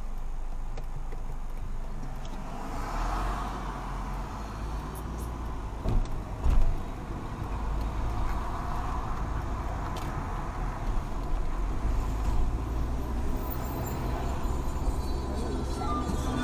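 Mercedes car's engine and road noise heard from inside the cabin as it pulls away from a standstill and gathers speed, with a low rumble that builds about two and a half seconds in. Two short loud thumps come about six seconds in.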